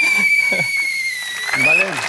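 One long whistle blast of about two seconds, held at a high steady pitch that sags a little and lifts just before it stops, signalling that the timed round has run out.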